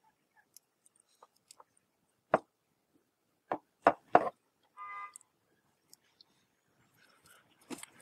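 Wire crimping tool working a red insulated quick-disconnect terminal onto a wire: a sharp click about two seconds in, then three clicks in quick succession around four seconds, a brief squeak, and faint handling ticks.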